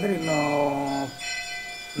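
A temple bell ringing, its clear tones starting about half a second in and ringing on steadily. A man's drawn-out voice fills the first second.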